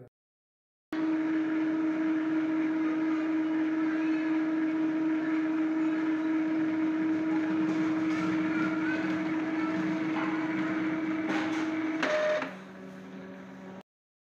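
Epson ink-tank printer running its ink-charging cycle after a refill: a steady motor whir with one constant low tone, as the printer draws the new ink into itself. It starts about a second in, and about twelve seconds in it shifts to a brief higher tone and then a quieter, lower hum.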